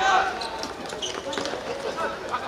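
Several short, sharp thuds of a football being dribbled and kicked on a hard court surface.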